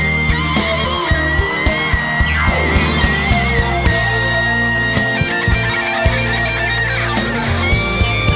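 Live rock band music led by an electric guitar solo: long, high held notes with vibrato and bends, and a fast slide down in pitch a few seconds in and again near the end, over drums and bass.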